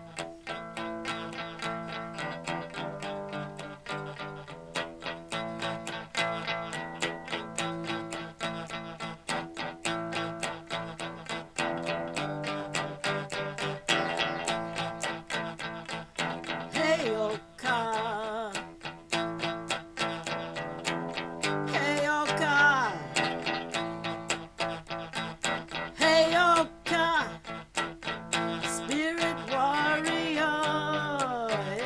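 Guitar played in a steady, densely picked pattern of plucked notes as a song's instrumental intro. From about halfway, several notes glide and waver in pitch over it.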